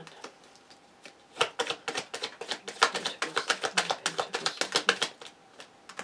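Tarot cards being shuffled by hand: a fast, even run of card slaps and clicks, about six to eight a second, starting a little over a second in and stopping near the end.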